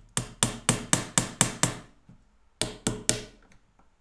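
Homemade plywood cajon tapped in a run of sharp strikes: about seven quick ones, a pause, then three more. The front-panel screw has just been loosened to adjust the snare sound, and the taps test how it now sounds.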